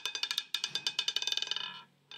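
Roulette ball clattering over the wheel's frets and pockets, the clicks coming quicker and closer together until it settles in a pocket and stops near the end.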